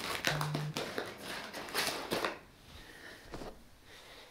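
Plastic packaging crinkling and rustling as a parcelled rug is unwrapped by hand, in a quick run of crackly bursts for about two seconds, then fainter handling. A short low buzz sounds under a second in.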